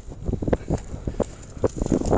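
Soft, irregular knocks and scuffs, about eight in two seconds, as a flat stone grave marker is lifted off the soil by hand, with wind buffeting the microphone.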